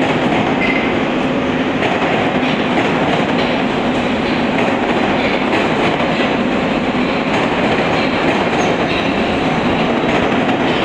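Metro train running along a station platform: a steady, loud rumble of steel wheels on rails, with faint repeated clicks of the wheels over rail joints.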